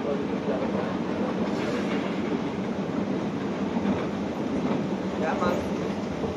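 Escalator running: a steady mechanical rumble and rattle of the moving steps and handrail drive, heard from on board. Faint voices come in about five seconds in.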